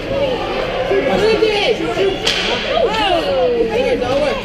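Overlapping shouts and calls from people at a youth ice hockey game, with a single sharp crack from the play about two seconds in.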